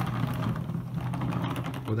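Small plastic toy car rolling on a wooden table, its wheels and body giving a fast, continuous rattle of tiny clicks over a steady low hum.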